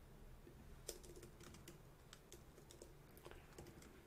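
Faint typing on a computer keyboard: a run of quick, light key clicks starting about a second in.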